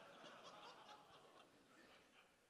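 Near silence: faint audience laughter trailing off in the first second, then only room tone.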